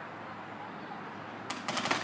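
Paintball marker firing a rapid string of shots, starting about a second and a half in.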